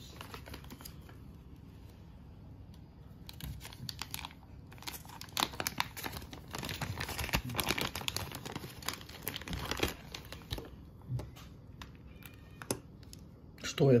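Clear plastic zip bag crinkling and rustling as a sewing-machine presser foot is taken out of it, starting about three seconds in and stopping around ten seconds, followed by a few light clicks.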